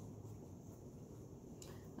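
Near silence: quiet room tone with a low steady hum, and a faint short rustle near the end.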